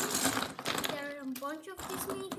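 Plastic LEGO minifigures clattering and rattling as they are tipped out of a crinkling plastic bag, loudest in the first half second.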